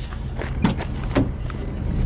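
Rear door of a Ford F-250 crew cab being unlatched and swung open: a few light clicks and knocks from the handle and latch over a steady low rumble.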